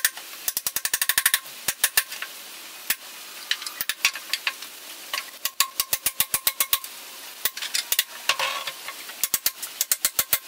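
Claw hammer striking a steel crowbar wedged between pallet boards, in quick runs of sharp metallic blows with short pauses, prying the pallet apart. A brief rasping sound comes about eight seconds in.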